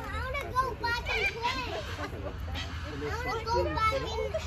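Children's voices chattering and calling out, high-pitched and overlapping, over a steady low rumble.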